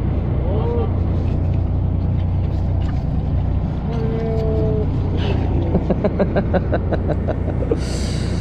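Fishing boat's engine running with a steady low hum, with brief voices over it and laughter near the end.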